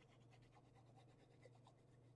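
Near silence: faint scratching of a liquid glue bottle's fine tip drawn along the edge of a paper card, over a low steady hum.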